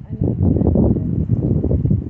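Wind buffeting the phone's microphone: a loud, steady low rumble.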